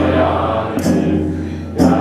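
Tibetan Buddhist liturgy chanted in unison by an assembly of voices, with a short high stroke about once a second keeping time. Near the end the chant thins briefly, then picks up again on the next stroke.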